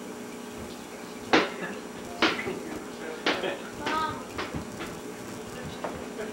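A few sharp knocks or clatters, about a second apart, the loudest about a second in, with a short bit of voice in the middle.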